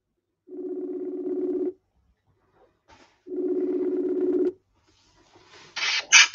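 Outgoing call ringing tone: two steady electronic rings about 1.2 seconds each, roughly a second and a half apart, as a dropped call is redialled.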